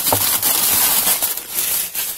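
Crumpled paper wrapping, a printed store flyer, crinkling and rustling as it is handled and pushed aside, dying away near the end.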